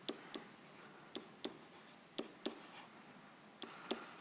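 Stylus tapping and scratching on a tablet screen while handwriting numbers: sharp taps, mostly in pairs, about four pairs.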